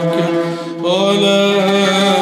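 A male munshid chanting an Arabic religious qasida (nasheed) in long, held, ornamented notes. There is a short break about half a second in, and a new sustained note starts just before one second.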